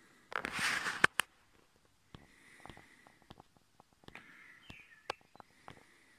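A short sniff, then two sharp clicks about a second in and faint scattered clicks afterwards as telescope eyepieces are handled.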